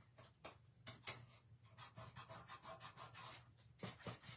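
Faint, quick scratching strokes, several a second, of wet paint being scraped back off a painted craft piece.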